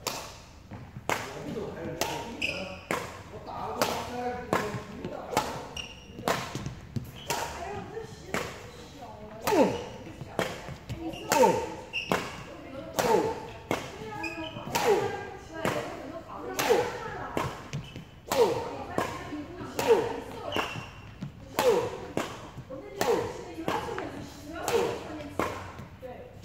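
Badminton rackets striking shuttlecocks in quick succession, about one to two sharp strokes a second, as in a multi-shuttle feeding drill, with the hall's echo after each hit. Short squeaks falling in pitch come between many of the strokes.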